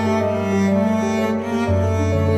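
Background music: sustained bowed strings, with cello and a low bass line moving slowly from note to note.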